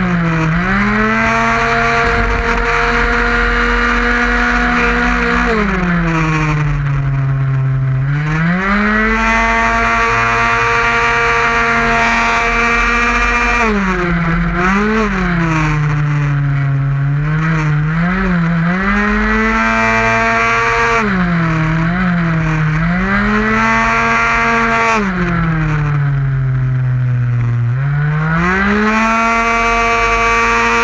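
Tuned 50cc two-stroke racing scooter engine at full race pace, heard from a camera on the bike: it holds one high, steady pitch on the throttle, then drops in pitch and climbs back each time the rider backs off for a corner, with three longer dips (about a quarter in, just past halfway, and near the end) and several brief ones.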